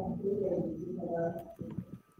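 A pigeon cooing: one low, wavering call about a second and a half long, fading out near the end.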